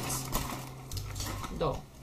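Plastic ballpoint pens clicking and clattering against one another as they are handled, a few sharp clicks.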